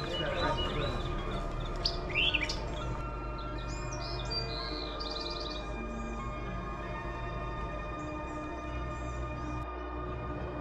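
Birds chirping in short bursts, about two seconds in and again around four to five seconds, over a steady backdrop of sustained ambient music.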